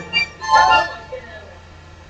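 A choir pausing between phrases of an anthem: the sung chord stops at the start, a short voice sounds about half a second in, then a lull with only faint background.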